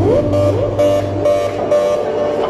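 Loud live concert music: a synthesizer line with repeated rising slides over a steady low note, and a regular beat about twice a second.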